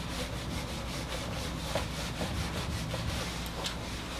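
A whiteboard being wiped clean of marker: quick, repeated rubbing strokes across the board's surface.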